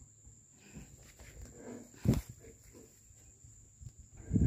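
Faint shuffling and knocks from a cow moving on the wooden plank bed of a pickup truck with a metal stock rack, with one loud, short thump about two seconds in.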